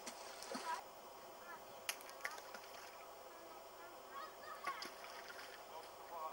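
Faint honking bird calls, a few separate calls over a low outdoor background, with a couple of sharp clicks about two seconds in.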